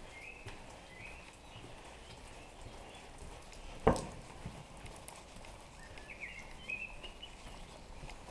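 Faint footsteps on a stone-paved lane, with birds chirping softly near the start and again near the end. A single sharp knock about four seconds in is the loudest sound.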